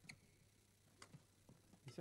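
Near silence broken by a few faint, sharp clicks about a second apart: badminton rackets striking the shuttlecock during a rally.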